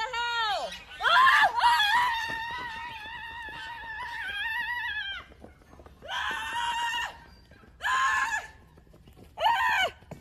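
A woman screaming in fright: a short falling cry, then one long high scream held for about four seconds, then three shorter screams about a second and a half apart.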